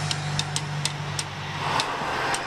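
Air-cooled four-cylinder boxer engine of a VW Beetle-based Hebmüller cabriolet running steadily as the car drives past, a low even hum with light regular ticking over it.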